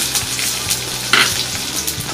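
Garlic, shallots and curry leaves sizzling as they fry in hot oil in a stainless-steel kadai, a steady frying hiss with a brief louder spurt a little past halfway.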